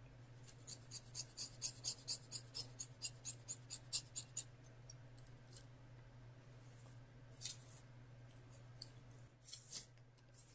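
Scissors snipping through synthetic wig hair: a quick run of crisp snips, about four or five a second, for the first four seconds or so. After that come a few soft rustles of the hair being handled.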